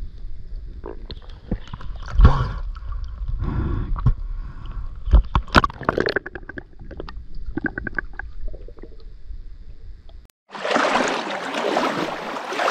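Underwater sound picked up by a submerged camera in a river: a low, muffled rumble with scattered clicks, knocks and gurgles. After about ten seconds it cuts out, and a steady rushing noise of river water at the surface takes over.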